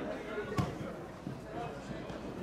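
A football kicked once, a single sharp thud about half a second in, with players' distant shouts around it.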